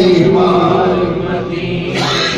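Unaccompanied naat sung by a man: a long held note that slowly falls in pitch, then trails off softer.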